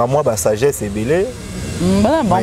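Speech: a man talking in conversation.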